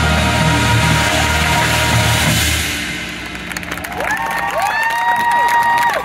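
Marching show band ending its piece on a loud held chord over drums, which cuts off about two and a half seconds in. The crowd then breaks into cheering, whoops and applause.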